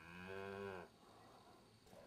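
A cow mooing once, a short low call that ends just under a second in.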